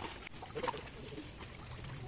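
A bird calling, over the low sloshing of water as people wade through a fish pond drawing a seine net.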